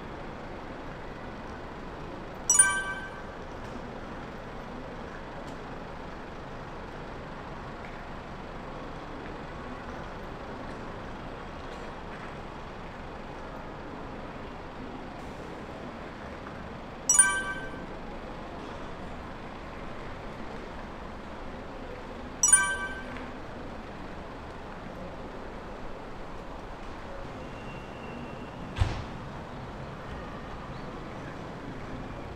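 Steady outdoor background noise around parked vehicles, broken three times by a short, sharp, loud sound with a brief ringing tone: once a few seconds in, then twice more about five seconds apart in the second half. A dull thump comes near the end.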